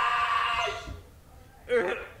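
A person's voice crying out on a steady held pitch for about a second, then, after a short pause, a brief second cry near the end.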